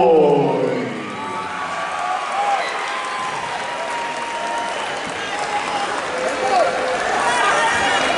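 Arena crowd applauding and cheering over a steady crowd hum, with scattered single shouts; a loud shout at the start, and the cheering swells a little near the end.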